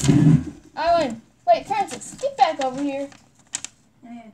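A girl's voice making short exclamations, with a loud rustle of handling noise at the very start and a short click near the end.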